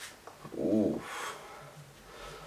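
One short voiced sound, about half a second long, whose pitch rises and then falls, followed by a soft breathy hiss.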